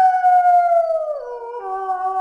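A single long, wolf-like howl. It starts high and slides slowly down, drops in pitch a little over a second in, drops again, then holds with a slight waver as it fades.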